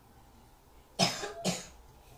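Two short coughs, about a second in, half a second apart.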